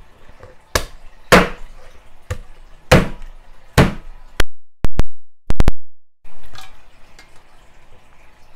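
A heavy knife chopping down onto a wooden cutting board: about eight hard, separate chops spaced half a second to a second apart. The loudest ones, past the middle, overload the recording and cut out for a moment, and the chopping stops about two seconds before the end.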